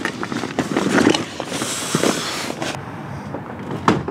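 Handling noise around a car's door and interior: irregular clicks and rustling, a brief hiss midway, and a sharp knock near the end.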